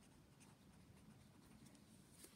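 Faint scratching of a pen writing on notebook paper, a few short strokes.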